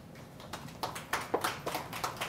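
Light, irregular taps on a hard surface, a few a second, starting about half a second in over quiet room tone.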